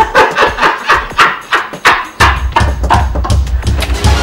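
Dramatic film underscore: a quick run of sharp percussive hits, joined about halfway through by a deep, pulsing bass.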